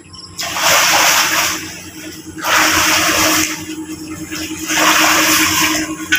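Sea water splashing in three surges of about a second each as a man wades through it and plunges in to swim.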